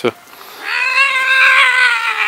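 A kitten giving one long, drawn-out meow, starting about half a second in and lasting nearly two seconds.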